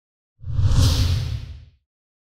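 A single whoosh sound effect with a deep rumble beneath a rushing hiss, swelling in about half a second in and fading away over about a second.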